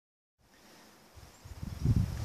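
Wind buffeting the microphone: a low rumble that starts faintly about half a second in and grows steadily louder toward the end.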